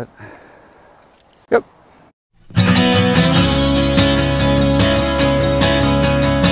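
A short loud sound about a second and a half in, then a moment of silence, then music with strummed acoustic guitar starting about two and a half seconds in and going on with a steady strumming rhythm.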